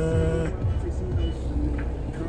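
A sleeping French bulldog snoring, with a wavering snore in the first half second, over the steady low rumble of a moving car and background music.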